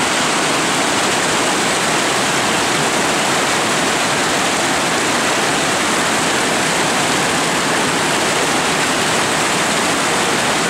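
River rapids rushing over and between boulders: a loud, steady rush of white water.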